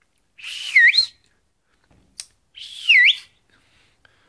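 Two loud no-finger whistles made with the tongue against the teeth, each under a second long. The pitch dips and then swoops sharply up, over a rush of breath.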